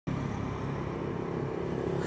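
A steady engine running in outdoor ambience, starting abruptly and holding an even level.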